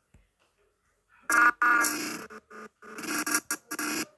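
A person's voice making loud wordless sounds in short choppy bursts, starting about a second in.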